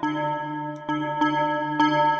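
Bell-like software synthesizer tone from a "Bellish" preset in FL Studio: a sustained pitched chord that rings on and is re-struck with fresh attacks about every half second.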